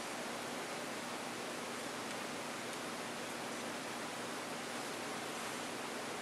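Steady, even hiss of background noise with no distinct events: room tone and microphone hiss between speech.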